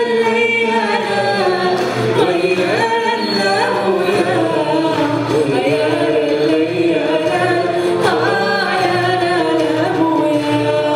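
A woman singing live into a microphone in long, sustained phrases, with light instrumental accompaniment underneath.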